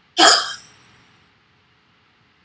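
A woman blows out one hard, fast breath through her mouth: a sudden forceful huff that tails off within about a second. It is a demonstration of the forced exhalation in a spirometry test.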